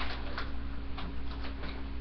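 Items being handled and rummaged through in a bag, giving short scattered clicks and rustles, two or three a second, over a steady low hum.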